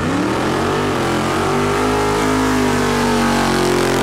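An engine revving up sharply, then held at high revs with a steady pitch.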